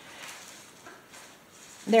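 Faint sounds of a Bernese Mountain Dog puppy licking and chewing treats from a plastic plate. A woman's voice comes in at the very end.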